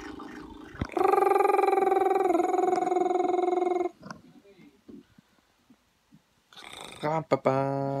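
A person's voice holding one long, wavering note for about three seconds, stepping slightly lower in pitch partway through. Faint handling noise follows.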